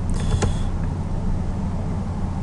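Steady low electrical hum in the background, with a brief light scratching of a stylus on a drawing tablet about half a second in as a small circle is sketched.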